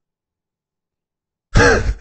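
Dead silence, then about a second and a half in a man's voice cuts in abruptly with a throat-clearing sound.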